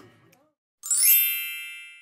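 Edited-in transition sound effect: a quick rising shimmer into a bright chime that rings and fades away over about a second.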